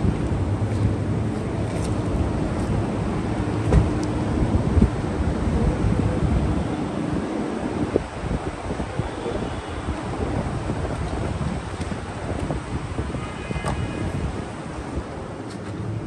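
Wind rumbling on the microphone over steady outdoor background noise. The low rumble drops away about eight seconds in.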